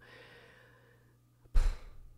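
A woman's sigh: one short breath blown out hard into a close microphone about one and a half seconds in, with a low breath-thump on the mic.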